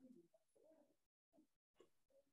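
Near silence on a video-call line: only faint traces of sound, with the audio cutting out completely twice for a moment.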